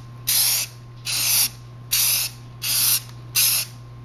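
Aerosol spray can of primer spraying in short bursts: five quick hisses, each about a third of a second long and a little under a second apart, over a steady low hum.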